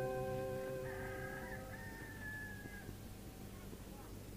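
Balinese gong kebyar gamelan ringing out at the end of a piece: the sustained tones of the bronze metallophones and gongs fade away. A faint drawn-out call rises and falls between about one and three seconds in.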